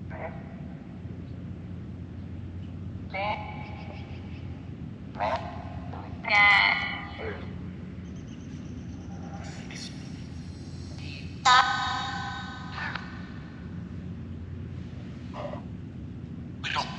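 A smartphone ghost-box app (Necrophonic) playing through the phone's small speaker: a steady hiss of white noise with short, choppy snatches of voice-like sound every few seconds, the loudest about two thirds of the way through.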